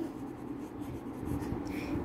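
A pen scratching across ruled notebook paper as a word is handwritten in cursive, a quick run of small strokes.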